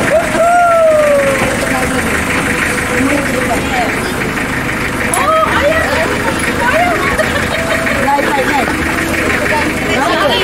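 Several people's voices talking and calling out over the steady hum of a small pickup truck's engine idling.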